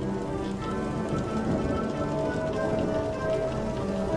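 Slow ambient music of long held, overlapping notes that shift every second or so, over a steady noise of water.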